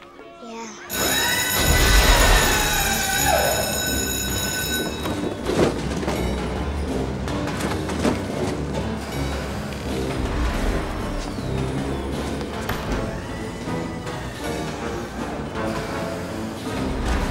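Film soundtrack: orchestral score mixed with the running of a mail-sorting machine. It starts suddenly about a second in with a burst of steady high ringing tones over a low rumble that lasts some four seconds, then carries on as a dense mix of music and machinery.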